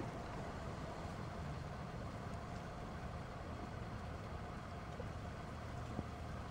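Steady low outdoor rumble with a faint steady hum above it, like distant traffic.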